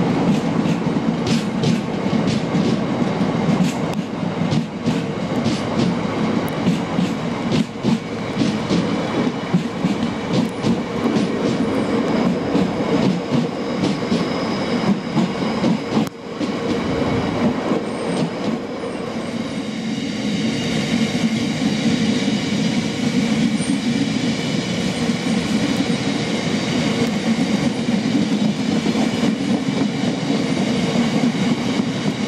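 Freight trains of bogie tank wagons rolling past at speed: a steady rumble with a rapid clatter of wheels over rail joints. After a short break about halfway, a second rake rolls by with fewer clicks and a steady high whine from the wheels.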